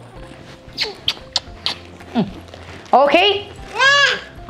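A few soft kissing smacks on a baby's cheek, then short, high, sing-song voice sounds near the end, rising and falling in pitch.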